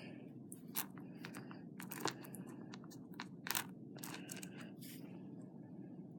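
Faint, irregular small clicks and crackles of craft wire and butterfly beads being handled by hand, thinning out about five seconds in.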